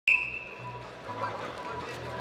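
A short, sharp referee's whistle blast at the very start, fading over about a second in a large hall, starting a Greco-Roman wrestling bout.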